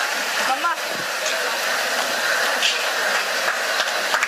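Audience applause with crowd noise, a steady dense clatter of many hands clapping.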